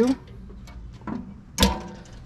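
Steel firebox lid of a Char-Griller Grand Champ XD offset charcoal smoker being shut. A couple of light knocks come first, then one loud bang with a short ring-out as the lid drops closed about one and a half seconds in.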